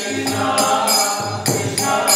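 Devotional song (bhajan) sung by voices, kept to a steady beat of small hand cymbals striking about twice a second.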